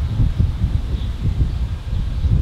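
Wind on the microphone outdoors: a low, uneven rumble that rises and falls.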